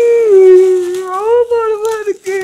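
A long, high howling wail held near one pitch, dipping and rising slowly, that breaks off briefly near the end.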